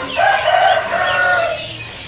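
A single loud, drawn-out bird call lasting about a second and a half, with brief higher chirps over it.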